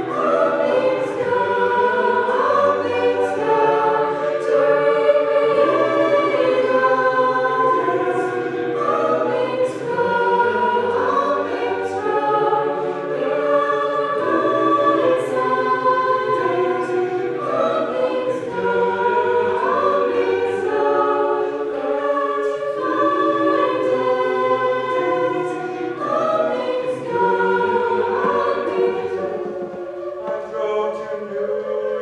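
A mixed-voice college a cappella group singing in close harmony with no instruments, a low bass part stepping between held chords beneath the upper voices.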